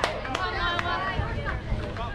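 Several voices of softball spectators and players calling out and chattering over one another, with a constant low rumble of wind on the microphone. A single sharp knock sounds right at the start.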